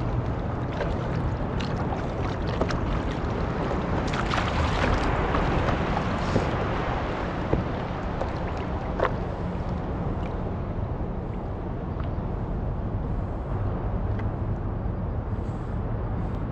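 Sea water lapping and slapping against a surfboard, with wind on the microphone; the sloshing grows louder for a couple of seconds about four seconds in, with a few sharp little splashes later on.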